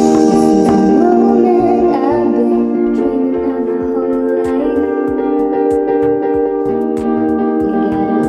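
A pop song with singing over sustained chords and a light plucked accompaniment, played through a Sony SRS-XB10 mini Bluetooth speaker and picked up by a small microphone, which gives it a slightly muffled sound.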